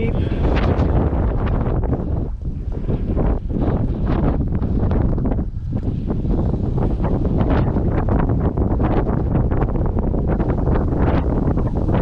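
Wind buffeting the microphone of a camera carried on a moving bicycle: a loud, rough rumble that never lets up, with irregular gusts.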